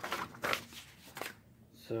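Paper rustling as a printed rules leaflet is handled and laid down on cardboard sheets, a short rustle in the first half second and a light tap about a second in.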